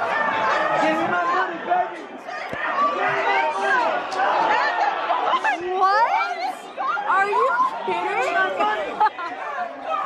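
Indistinct chatter of several people talking at once, voices overlapping throughout.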